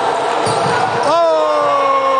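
Reverberant game noise of an indoor futsal match on a wooden court: the ball and players' feet knocking on the floor in a large hall. About a second in, a man's voice starts one long drawn-out call that slowly falls in pitch and is the loudest sound.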